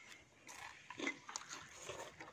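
Faint, scattered clicks of chopsticks against plates and a serving bowl as noodles are lifted and served, with a couple of faint low sounds about one and two seconds in.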